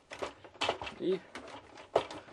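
A few sharp plastic clicks and taps as a flat screwdriver pries at the snap-in latches of an Epson inkjet printer's plastic housing; the loudest click comes right at the end.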